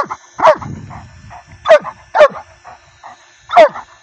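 A dog barking: five loud, sharp barks, two at the very start about half a second apart, two more about two seconds in, and one near the end, with softer short sounds between them.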